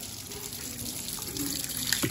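Steady flow of water running from a hose, growing a little louder near the end.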